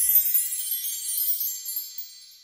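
High, shimmering chime tones of an animated logo sting, slowly dying away. A low rumble under it cuts out just after the start.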